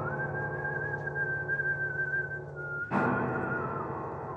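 A high whistled note held for nearly three seconds, wavering slightly, then stepping down and trailing off with a vibrato, over sustained piano chords. A new chord is struck about three seconds in.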